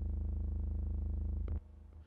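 A low synth bass note from the AIR Loom additive software synthesizer, held steady with a fast, even buzz, as a bass preset is auditioned. It cuts off about one and a half seconds in with a small click.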